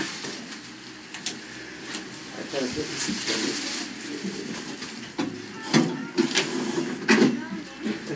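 Plastic film wrapped around a refrigerator crinkling and rustling as it is handled and shifted into place, with several sharp knocks and bumps from the appliance being moved.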